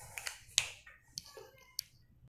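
A few sharp, separate clicks and taps, the loudest about half a second in.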